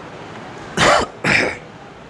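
Two short coughs, about half a second apart.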